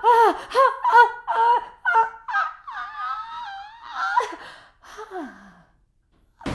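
A man's voice crying out in short, high-pitched rhythmic cries, about two to three a second. It then breaks into a longer wavering cry and ends in a falling moan that trails off just before the end.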